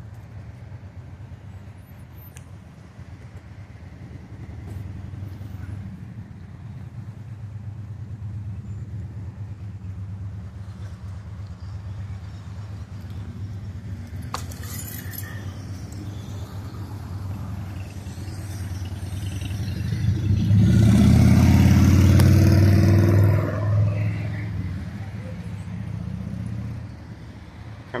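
Street traffic under a steady low rumble, with one vehicle passing close and loud about three-quarters of the way through.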